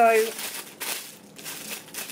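Clear plastic packaging crinkling as it is handled, in several short, irregular crackles.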